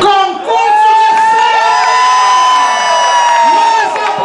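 Audience cheering and screaming, with many long high-pitched screams held and overlapping for about three seconds.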